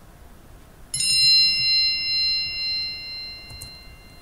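A single high, bell-like 'bing' chime sounds about a second in and rings on, slowly fading. It is the quiz's cue to pause the video and write down an answer.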